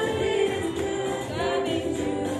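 Gospel praise song with a choir of voices singing held, sliding notes over the music.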